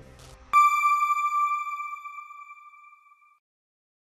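Background music fading out, then a single bell-like electronic ping about half a second in, preceded by a short swish. The ping is an end-card sound effect that rings and dies away over about three seconds.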